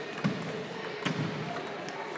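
Celluloid-type table tennis ball struck back and forth in a rally: sharp, light clicks of the ball off the bats and the table, a few to the second, the loudest about a quarter second in and about a second in.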